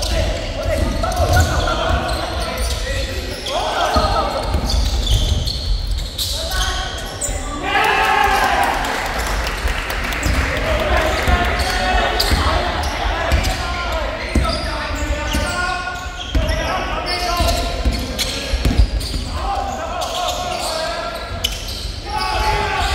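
Sounds of a basketball game in a large gym hall: a basketball bouncing on the wooden floor, mixed with players' and onlookers' voices that echo around the hall.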